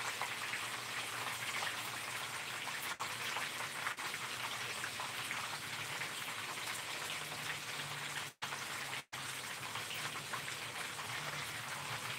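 Food sizzling and crackling steadily in a frying pan on the stove. The sound cuts out briefly twice just past the eight-second mark.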